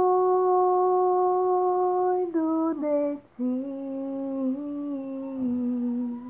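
A woman singing wordless notes with no accompaniment: one long held note, then a few short notes stepping down to a lower note that she holds to the end.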